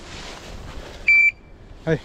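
A single loud electronic beep, steady in pitch and about a quarter second long, from a hunting dog's beeper collar, over the rustle of walking through dry grass. A short call from a man's voice comes near the end.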